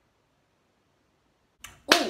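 Near silence, then a sudden loud whoosh near the end that falls in pitch.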